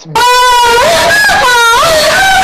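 A very loud, distorted, high-pitched sound effect, wavering in pitch, cuts in abruptly and stays at a flat level, laid over the audio to censor a spoken Instagram handle.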